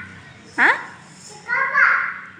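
A toddler's high-pitched voice: a quick squeal sliding down in pitch about half a second in, then a longer call near the end.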